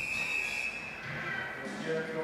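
Indoor swimming-pool hall ambience: an even background of crowd and water noise, with a steady high tone that fades out about a third of the way through and a fainter, lower tone near the end.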